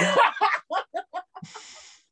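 A woman laughing hard: a loud burst breaking into a quick run of cackling pulses that fade away, ending in a short breathy hiss before the sound cuts off suddenly.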